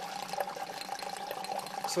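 Water gurgling and sucking through the return plumbing of a homemade PVC hydroponic system, with a steady tone underneath. The line is pulling a vacuum and drawing water and air in together, making a horrible noise.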